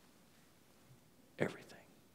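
Quiet room tone, then about one and a half seconds in a short whispered word from a man's voice.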